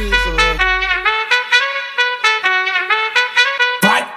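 Trumpet playing a melody of short, quick notes in an eletrofunk track. A held deep bass note fades out about a second in, leaving the trumpet nearly on its own.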